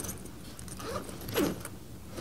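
Faint clinking and rustling of small objects being handled, a lecturer rummaging for a highlighter, with a couple of brief louder moments about a second and a half in.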